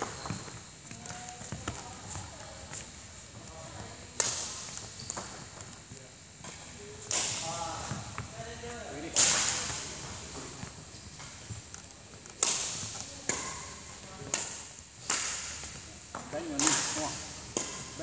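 Badminton racket swung hard through the air during shadow footwork: about seven sharp swishes, spaced irregularly a second or two apart, each fading quickly in the hall's echo.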